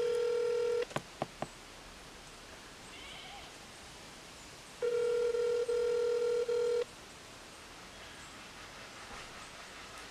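Telephone ringback tone over a mobile phone's speaker: a steady ring lasting about two seconds, repeated once about four seconds later, the call ringing unanswered. A few light clicks come just after the first ring.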